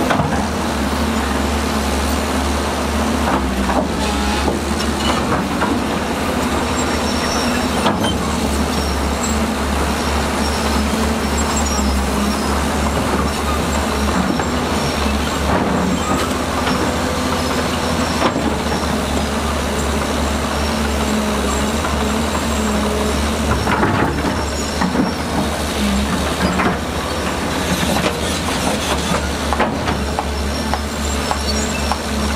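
SHANTUI SD13 crawler bulldozer pushing stone and dirt: a steady low diesel engine drone under load, with rattling steel tracks and occasional sharp clanks of rock against the blade.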